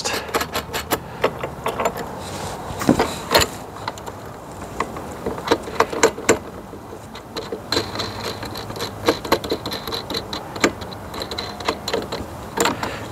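Irregular metallic clicks and clinks of a hand tool tightening the bolts of a light's mounting bracket on a galvanized steel post. A faint steady hum joins about eight seconds in.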